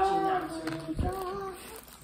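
A young girl singing a short run of held notes that step up and down in pitch, with a soft low thump about halfway through.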